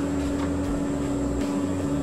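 Steady mechanical hum inside a stationary car's cabin, with one constant pitched tone running through it, typical of the car idling with its air conditioning on.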